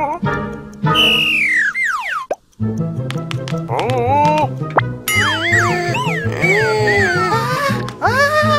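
Cartoon sound effects over children's background music: a long falling whistle-like glide, a brief break, then a bouncy tune with a repeating bass line and springy, boing-like bending tones.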